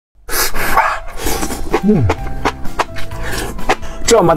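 Close-miked slurping of spicy enoki mushroom strands, followed by wet chewing clicks, with a short falling "mm" hum about two seconds in.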